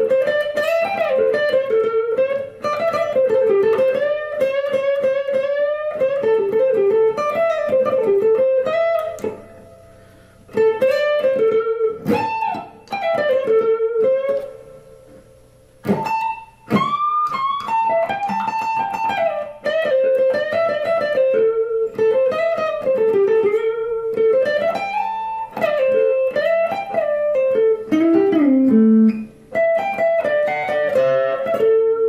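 Semi-hollow electric guitar playing single-note blues lead phrases in A minor pentatonic. The phrases break off for two short pauses about halfway through, and a string bend rises in pitch just after the second pause.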